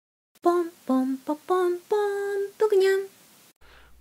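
A short unaccompanied sung jingle: one voice sings about seven held notes in a simple tune, ending about three seconds in.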